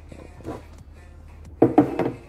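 Faint background music, then near the end a few sharp knocks as an aluminium-finned car amplifier is set down and handled on a table.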